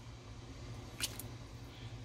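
Quiet background: a steady low hum with faint hiss, and two brief faint clicks about a second in.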